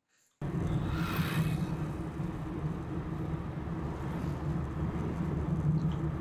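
Steady road noise and engine drone inside a Suzuki Alto's cabin as it drives, picked up by the dashcam's microphone. It starts suddenly about half a second in, with a brief rise in hiss about a second in.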